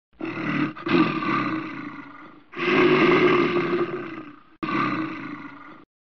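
Animal roar sound effect, heard three times in a row. Each roar starts loud and fades away. The first has a brief break just after it begins, and the last cuts off shortly before the end.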